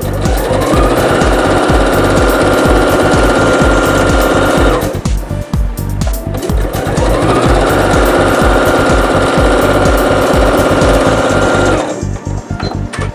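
Electric sewing machine stitching in two runs. Each time the motor speeds up over about a second and then runs at a steady speed. The first run stops a little before halfway, and the second starts after a pause of about a second and a half and stops just before the end.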